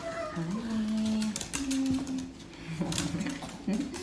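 A person's voice in drawn-out, held notes, like humming or sing-song talk. Under it is a scratchy rubbing of a towel on a dog's wet coat, with a few short clicks.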